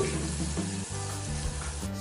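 Bacon, ham and mushrooms sizzling in a stainless steel frying pan as they are stirred with a spatula, a steady hiss of frying.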